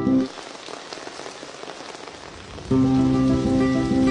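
Steady rain falling, an even hiss heard on its own between stretches of music: the music cuts off just after the start and comes back in shortly before the end.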